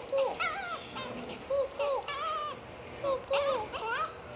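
Small white dog whining in a string of about a dozen short, high-pitched whimpers that rise and fall in pitch.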